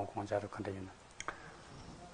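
A man's voice speaking briefly, then two short clicks and a pause.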